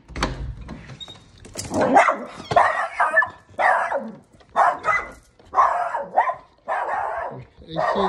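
A door latch clicks as a door is opened. Then a dog barks repeatedly, about one bark a second.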